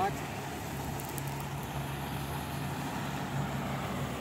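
Motorboat engine running steadily out on the water, heard as a low, even hum.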